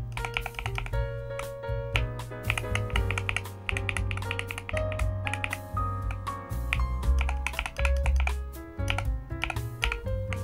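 Repeated keystrokes on a Varmilo Minilo75 HE keyboard's magnetic linear switches as the A and D keys are pressed and released in turn, a string of short clicks over background music with a bass line.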